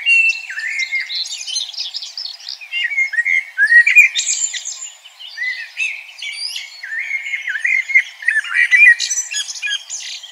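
A songbird singing a long, rapid, warbling song of chirps, trills and quick pitch slides, with a short break about halfway through.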